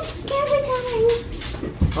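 A young child's drawn-out whining vocal, held for about a second and sliding slightly down in pitch, followed by a dull thump near the end.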